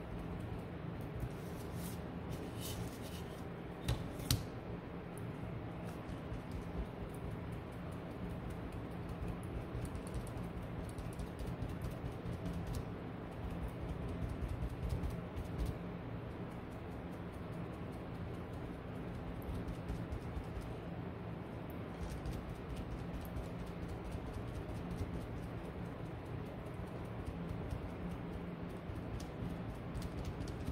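Hand-sanding the edges of painted wooden cutout pieces: a steady fine scratching of abrasive rubbing on wood, with a couple of light knocks near the start.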